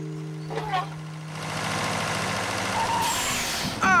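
A tractor engine approaching and pulling up, with a short hiss near the end like a brake release, as a held music note fades in the first half-second.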